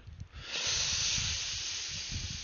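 A steady hiss that starts about half a second in and holds evenly.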